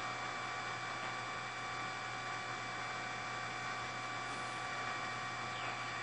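Steady hiss with a low electrical hum and faint steady tones on an open live broadcast audio feed, with no voice on the line.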